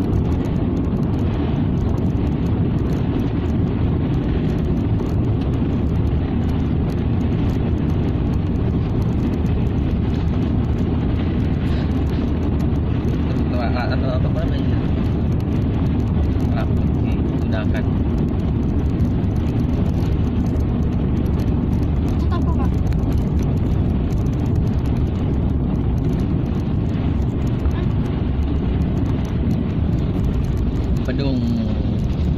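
Steady low rumble of a car's engine and tyres on a rough asphalt road, heard from inside the moving car's cabin.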